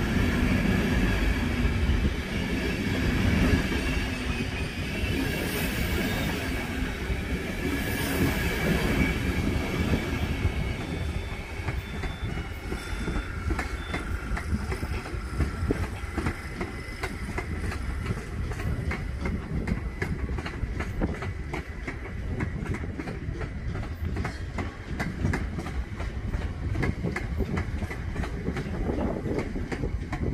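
LNER express passenger train passing close: a loud rumble of wheels and coaches with a steady high whine, dying away after about ten seconds. A slower train on farther tracks follows, with a long run of rhythmic wheel clicks over rail joints.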